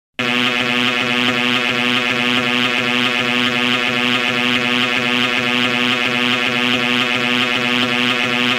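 A loud, steady, low buzzing drone: one unchanging pitch with many overtones.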